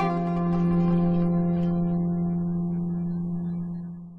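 Oud: a chord plucked right at the start rings on, its low note strongest, and slowly fades away over about four seconds.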